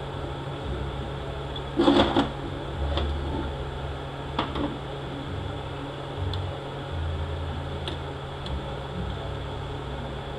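Steady low workshop hum, with a short metallic clatter about two seconds in and a few faint clicks from a C-clamp being screwed down on an aluminium transmission case.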